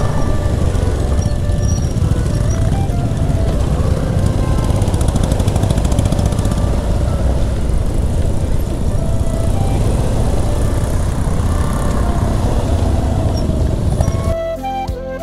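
Steady wind rush on the microphone of a moving motorcycle, with the engine running underneath.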